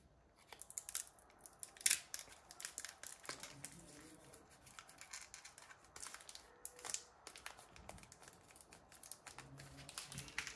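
Foil booster-pack wrapper being torn open and handled: irregular crinkling and tearing with sharp crackles, the loudest about two seconds in.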